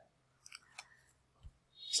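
A few short, faint clicks in an otherwise quiet pause, about half a second, just under a second and a second and a half in; a woman's speaking voice begins near the end.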